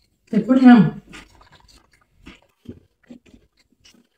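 A short voiced utterance, loud and rising then falling in pitch, about half a second in, followed by quiet mealtime sounds: a few faint small clicks and chewing.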